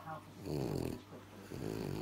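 French bulldog making two low grunts, the first about half a second in and the second about a second later.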